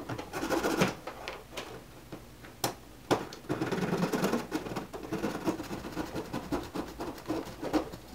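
A small hacksaw sawing through a white plastic part in quick back-and-forth rasping strokes, easing off for a moment about two seconds in before the strokes pick up again.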